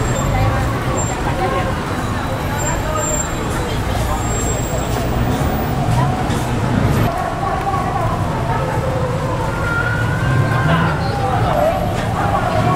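Busy street ambience: indistinct voices of people talking over a steady traffic rumble.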